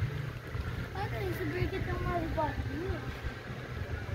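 Voices talking faintly for a couple of seconds, over a steady low rumble.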